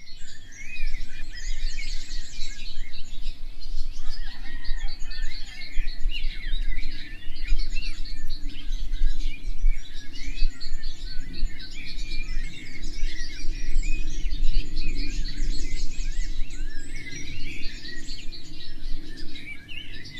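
Many birds chirping and twittering together in a dense, continuous chorus, over a steady low rumble.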